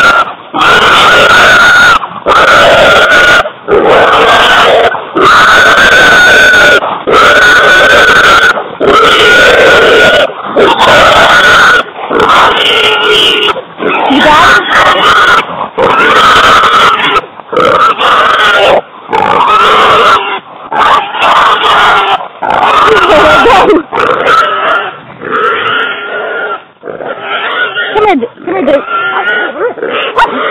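A hog squealing loudly and over and over while held by catch dogs. The long shrill squeals come about every one and a half to two seconds and turn shorter and more ragged near the end.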